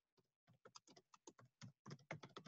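Computer keyboard typing: a quick run of faint keystrokes, several a second, starting about half a second in.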